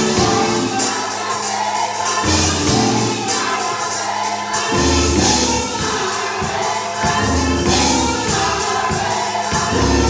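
Gospel choir singing over band accompaniment, with a low bass line moving to a new note every two or three seconds.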